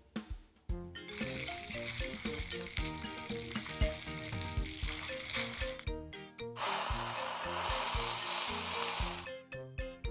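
A cartoon dental water-spray nozzle hissing, rinsing the teeth, over light background music. The spray becomes much louder and fuller about six and a half seconds in, then stops shortly before the end.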